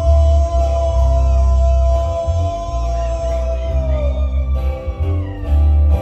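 A live sierreño band playing: guitar over deep bass notes, with a long held high note that slides down about four seconds in.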